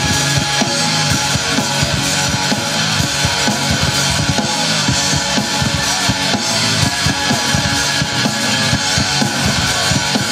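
Live rock band playing loudly: electric guitars and bass guitar over a drum kit beating out a fast, steady rhythm.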